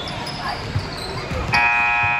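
A basketball bouncing on a hardwood gym floor, then about one and a half seconds in the scoreboard buzzer starts: a loud, steady horn tone. The buzzer marks the game clock running out.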